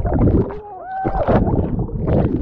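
Muffled gurgling and sloshing of pool water around a camera held underwater, in uneven surges.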